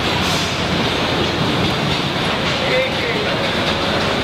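Steady, loud machinery din of a car assembly line, with faint voices in the background.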